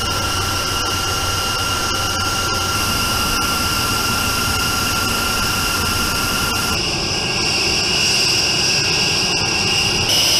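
A B-1B Lancer's General Electric F101 turbofan engines running, a steady whine over a broad rush, heard from inside the cockpit. About seven seconds in the sound shifts: the lower steady whine drops out and a higher whine grows louder.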